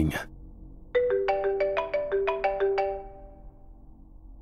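Mobile phone ringtone: a quick melody of about a dozen short, bright notes, starting about a second in and lasting roughly two seconds before fading.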